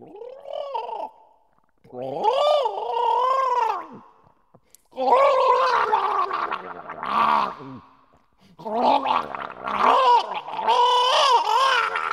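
A person gargling while voicing pitched tones: a short gargle, then three long gargled phrases whose pitch bends up and down, with brief pauses between them. The gargling is performed as music, in a contemporary composition written for gargles.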